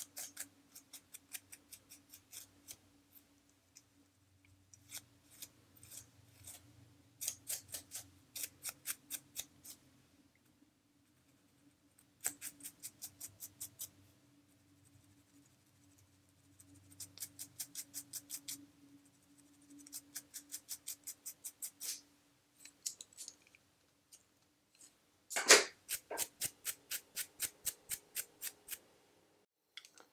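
Scratching of a dry, flaky, dandruff-covered scalp through thick curly hair, in quick runs of strokes about five a second with short pauses between. The loudest run comes near the end.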